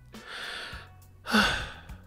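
A man's breathy sigh, 'haa'. A softer breath comes first, and the sigh itself starts a little over a second in.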